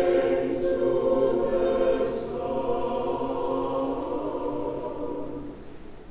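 Mixed choir of men's and women's voices singing held chords, with a sung 's' about two seconds in; the chord fades toward the end.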